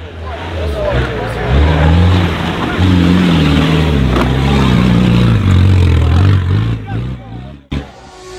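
Off-road 4x4's engine revving hard under load as it drives through mud, its pitch rising and falling again and again. It cuts off abruptly just before the end.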